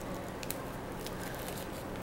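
Faint handling of a soap bar in its paper and plastic wrapping, with one light tick about half a second in, over a low steady room hum.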